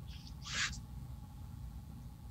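A short breathy intake of air by the lecturer, about half a second in, over a faint steady low hum.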